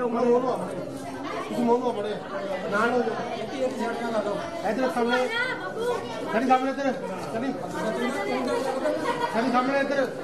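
Crowd chatter: several people talking at once, men's and women's voices overlapping.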